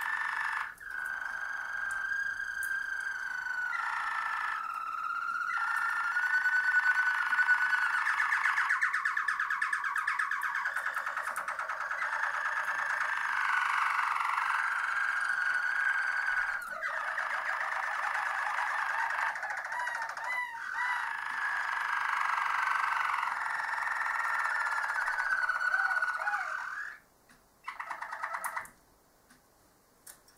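Harzer Roller canary singing one long continuous song of rapid rolling trills, changing from one tour to the next every few seconds. It breaks off about 27 seconds in, with one short phrase after.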